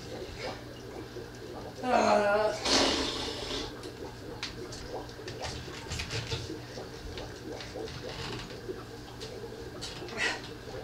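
A woman's short, rising "ah" of strain about two seconds in while she hangs upside down working a pole move, followed at once by a breathy exhale. The rest is low room noise with a few faint clicks.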